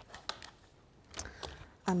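Clear plastic die-cutting plates handled and set down on a glass craft mat: a few light clicks and taps near the start and again past the middle.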